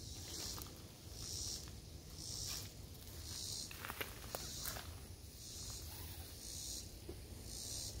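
An insect calling in a steady rhythm, a high hissing buzz about once a second. A few light clicks and rustles come around the middle as the mesh hammock bug net is handled.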